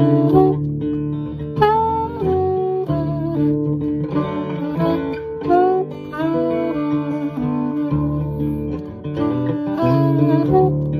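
Acoustic guitar strumming chords while a saxophone plays a melody of held notes over it, some bending in pitch: a guitar and sax duet.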